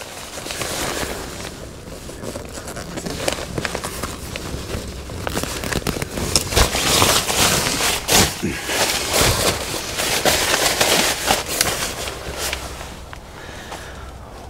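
Synthetic fabric of a Tragopan V6 photography hide's built-in groundsheet and walls rustling and crinkling as it is handled, with crackly bursts that come thickest in the middle.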